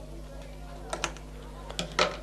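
A few sharp mechanical clicks at a domestic sewing machine as fabric is worked under the presser foot, over a steady low hum. A pair of clicks comes about a second in, then two more near the end, the last the loudest.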